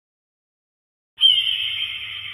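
Logo sound effect: silence, then about a second in a sudden bright high-pitched hit with a low rumble under it, which begins to fade away.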